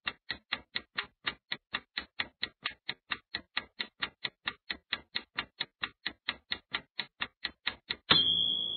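Clock-tick sound effect ticking steadily at about four to five sharp ticks a second, counting down a quiz timer.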